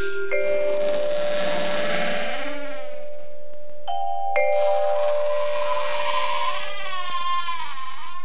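Cartoon sound effect of a mockingbird imitating a creaky gate: two long creaks, the second starting around the middle, each ending in a wavering squeal. Sustained music notes run beneath.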